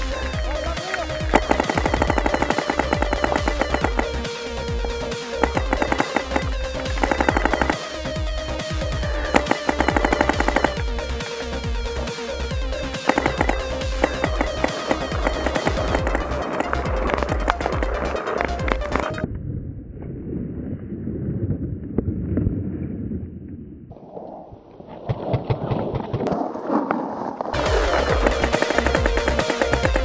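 Electronic dance music with a steady, driving beat. About two-thirds through, it drops into a muffled, filtered breakdown without the bass pulse, which builds back into the full beat near the end.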